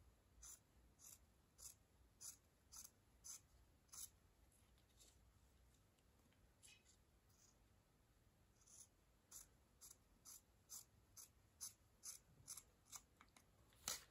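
Sewing scissors snipping through folded fabric: a run of faint, crisp snips about two a second, a pause of a few seconds in the middle, then a second run of snips.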